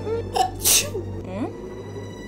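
A woman sneezing once, a short voiced intake followed by a sharp "choo" burst, over light background music.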